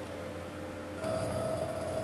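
Faint room noise and hiss, with a faint steady hum coming in about a second in.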